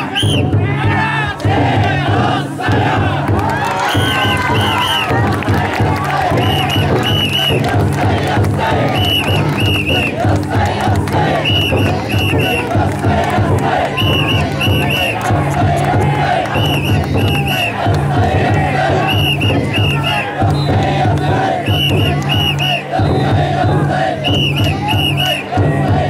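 A large crowd of bearers shouting and chanting together as they hold a taikodai drum float aloft. Under the voices the float's big drum beats steadily, and pairs of short, high whistle blasts sound every couple of seconds.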